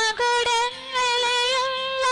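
A woman's voice singing a hymn in long held notes, with short breaks between phrases.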